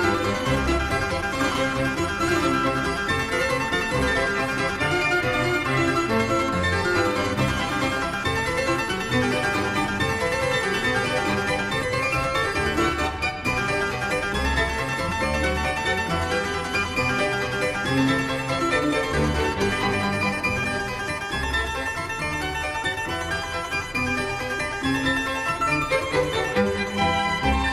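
Harpsichord playing a busy solo passage of quickly changing notes in a late-18th-century harpsichord concerto.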